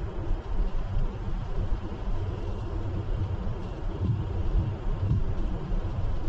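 Simulated MAN truck engine running steadily while under way, a deep low drone with an even hiss of road noise above it, as rendered by a truck-driving simulator game.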